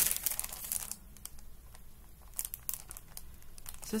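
Clear plastic sticker packaging crinkling as it is handled, loudest in the first second, then quieter with a few scattered crinkles later on.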